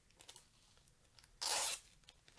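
Packaging being torn: one short, loud rip about one and a half seconds in, with light crinkling of wrapper around it.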